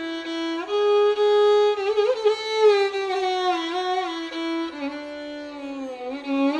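Solo violin bowed in Indian classical style: a slow single melodic line that holds notes and slides smoothly up and down between them.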